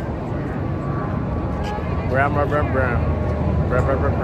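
Low-flying jet airliner passing overhead, a steady low rumble slowly growing louder, over road traffic. Voices of people nearby come in about two seconds in and again near the end.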